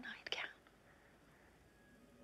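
A woman whispering the end of a line ("nightgown") in the first half-second, then near silence with faint room tone.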